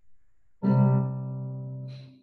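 A piano's left-hand two-note C chord (C and G, an open fifth) struck once about half a second in and left to ring, fading slowly.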